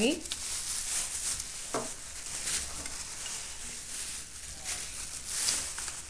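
Thin plastic bags crinkling and rustling in the hands in uneven bursts as a small baggie is opened, louder near the end.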